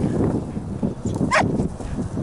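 A beagle gives one short bay about a second and a half in, over wind rumbling on the microphone and brush rustling.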